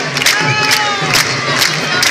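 Candombe drums beating with sharp, quick strokes under a noisy crowd shouting and cheering. About half a second in, a long cry slowly falls in pitch over the din.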